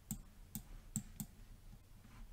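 A few faint, irregularly spaced clicks of a computer mouse, as the image on screen is zoomed in.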